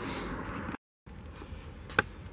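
Faint room hiss with a soft rustle of camera handling. About a second in it drops to dead silence for a moment where the recording is cut, then resumes quieter, with a single click near the end.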